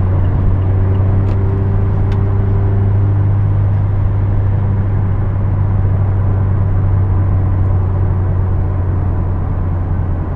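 2017 Mazda Miata RF's 2.0-litre four-cylinder engine running at a steady cruise, heard from inside the cabin together with tyre and road noise. The low engine drone holds level, and a faint higher tone fades out a few seconds in.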